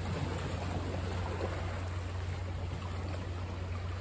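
Steady shoreline ambience: wind on the microphone and water noise, with a steady low hum underneath.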